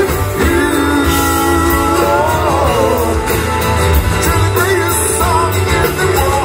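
Rock song with guitar, bass and drums under a singing voice that holds long notes, which bend down in pitch about two and a half seconds in and again near the end, while cymbals keep up a steady beat.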